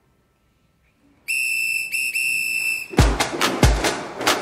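Silence for about a second, then a shrill whistle held for about a second and a half with a brief break in it, followed by a dance-pop track starting with kick-drum beats and sharp percussion clicks near the end.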